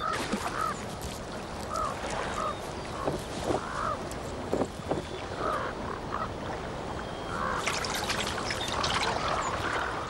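Corvids calling with short, repeated croaks over trickling, sloshing water, with a few sharp knocks a few seconds in. The water sounds grow busier near the end, as a grizzly bear works through slushy ice and water.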